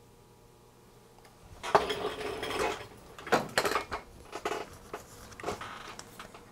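Metal tools and small parts being handled on a workbench, clinking and clattering irregularly. It starts about a second and a half in, with several sharp clinks among the rattling.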